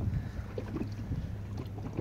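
Wind rumbling on the microphone and choppy water moving around a small boat drifting with its engine off.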